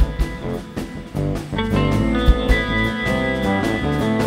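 Live band playing an instrumental passage of a chacarera on electric guitar, six-string electric bass and drum kit. The band thins out for a moment about half a second in, then comes back in together about a second in.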